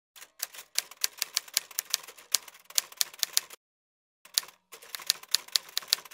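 Typewriter-style keystroke sound effect: a quick run of sharp clacks, about five or six a second, that stops dead for about half a second past the middle, then starts again.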